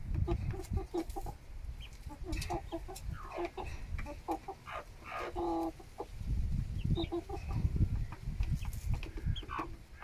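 Several chickens clucking as they feed: many short clucks, with one longer drawn-out call about five seconds in, and scattered sharp clicks of beaks pecking at the feed bowls. Bursts of low rumble near the start and from about six seconds in.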